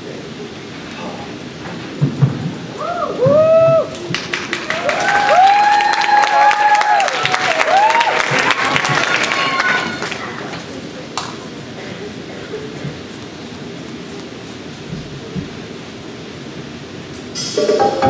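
Audience cheering with whoops, then clapping for about six seconds before the hall settles to a low murmur; backing music for a song starts near the end.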